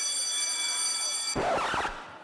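A steady, high-pitched electronic tone from the song's intro, holding one pitch, cut off about a second and a half in by a short burst of noise.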